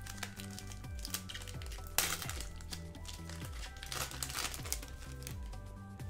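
Foil wrapper of a Pokémon card booster pack crinkling as it is torn open, with a louder crackle about two seconds in, over steady background music.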